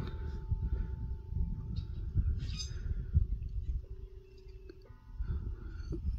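Low, uneven rumble of wind on the microphone, with faint steady tones behind it.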